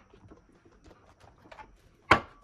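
Near silence with a few faint, scattered light taps and rustles of tarot cards being handled.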